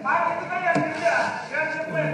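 Only speech: a man talking in the assembly hall, with no other sound standing out.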